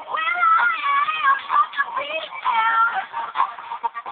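Electronic pop-song vocal, heavily processed, sliding up at the start, holding long notes and falling away twice.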